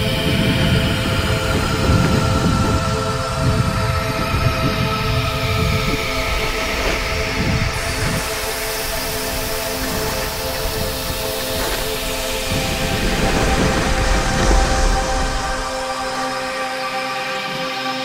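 A snowboard sliding fast over hard-packed snow, with a steady rumble and wind buffeting a helmet-mounted action camera.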